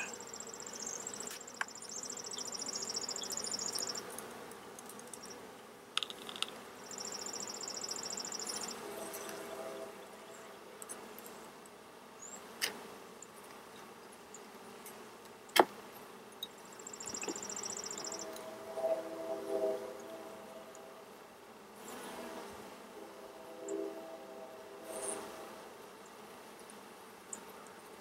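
Honey bees buzzing around an open hive, the buzz swelling and fading as bees fly near, with a few sharp clicks from a steel hive tool prying at the wooden frames.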